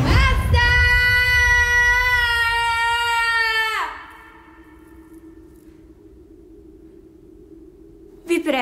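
A young woman's long scream of distress, held on one high pitch for about three seconds, then sliding down and breaking off.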